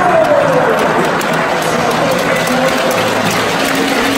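Steady crowd noise from a large stadium crowd: a dense wash of many voices, with one falling call near the start.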